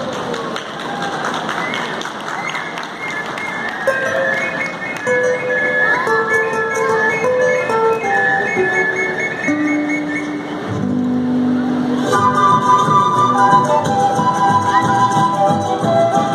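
Andean folk ensemble opening a piece with ocarinas: clear, held whistle-like notes in a slow melody. About twelve seconds in, the rest of the band comes in and the music grows fuller and louder.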